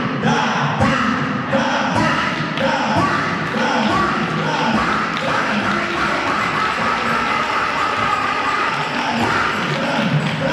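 Voices amplified through a church sound system over a steady thudding beat, about two thumps a second, in a large hall.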